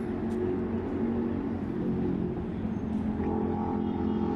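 A motor vehicle engine running close by: a steady low hum that shifts in pitch about three seconds in.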